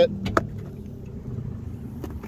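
A couple of short clicks as the rubber door-release button is pressed, then the steady low hum of a car engine idling.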